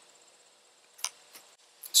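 A quiet pause with faint cricket chirping high in pitch and two small clicks about a second in.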